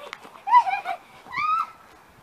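A small child's high-pitched squeals, two short ones about a second apart, each rising and then falling in pitch.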